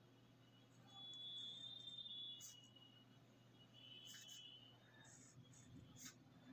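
Faint scratching and squeaking of a ballpoint pen drawing lines on paper, in two short strokes, over a low steady hum.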